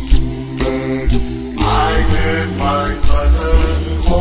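Unaccompanied gospel hymn singing: several voices in harmony over a deep bass part.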